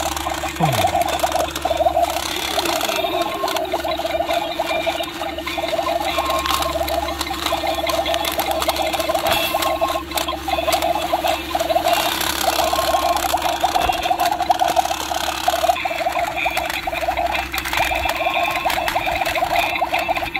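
Small battery toy bubble machine running: a steady electric buzz and whir with a rapid flutter and a low hum underneath. Leaves rustle and crackle as a lettuce head is pulled up.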